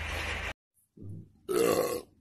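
A man lets out a loud, half-second burp about one and a half seconds in. It follows a brief cut to silence that interrupts a steady low hum at the start.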